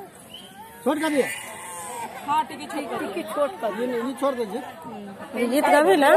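A group of voices talking and calling over one another, some of them drawn out and wavering.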